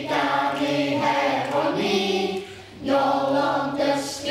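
A choir of young children and adults singing together, held notes in short phrases with a brief break about two and a half seconds in.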